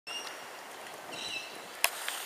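Steady outdoor background hiss with two short high chirps, one right at the start and one a little past a second in, and a sharp click near the end.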